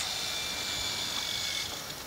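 Steady outdoor background hiss with a thin, high, steady tone in it that fades out near the end.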